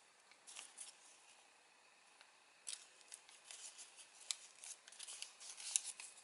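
A sheet of origami paper being handled and creased by fingers, making faint, crisp crinkling and rustling. There is a cluster of short crackles about half a second in, a lull, then frequent little crackles again from about two and a half seconds on.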